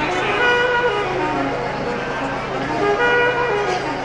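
A street band's saxophone and violin playing a tune in held notes that step from pitch to pitch, in two phrases, with crowd voices underneath.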